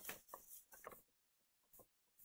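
Faint rustle and scrape of a sheet of freshly printed paper being handled with the fingers: a few soft strokes in the first second, then near silence.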